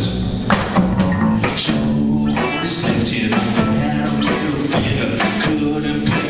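A live rock trio playing: electric guitar, bass guitar and drum kit, with steady drum strikes under sustained guitar chords.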